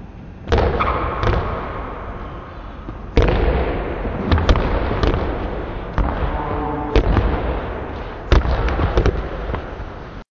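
Two basketballs dribbled on a hardwood gym floor, the bounces echoing through the gym, with a sharp, louder bounce every second or so.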